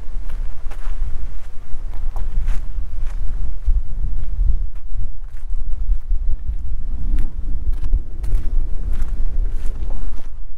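Wind buffeting the microphone in a steady low rumble, with footsteps on gravel.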